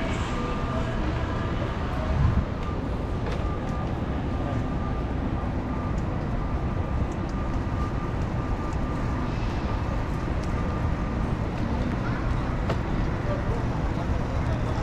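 Steady city street background noise: traffic and indistinct voices, with a single low thump about two seconds in.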